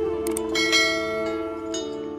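A short double mouse click, then a bright bell chime that rings out and fades: the notification-bell sound effect of a subscribe animation, over plucked-string background music.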